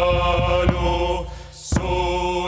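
Closing music: held, chant-like tones over a low drone, stepping from one pitch to another and dipping briefly about a second and a half in.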